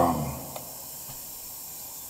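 Steady background hiss of the open microphone line, with no music or singing yet; the last of a man's voice dies away in the first half second.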